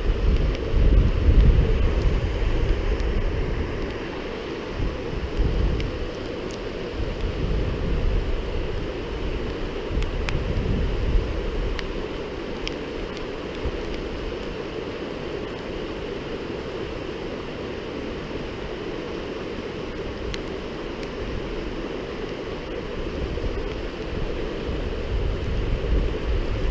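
Steady rush of a rocky stream running through rapids, with gusts of wind buffeting the microphone that are strongest in the first several seconds. A few faint ticks come through now and then.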